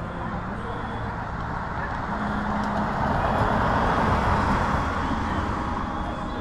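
A car passing along the street, its tyre and engine noise swelling to a peak about four seconds in and then fading, with people talking in the background.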